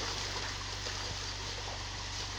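Steady splashing and running water as live fish are tipped from a plastic basin into a concrete pond, with water pouring in from an inflow pipe.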